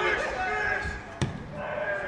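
Footballers shouting to each other on the pitch, with one sharp strike of a boot on the football just over a second in.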